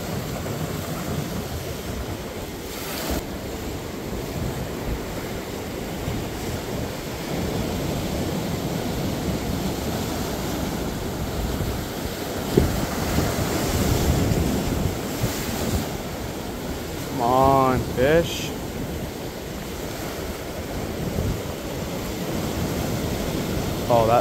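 Rough ocean surf washing and foaming over the rocks of a small cove, a continuous wash that swells louder through the middle.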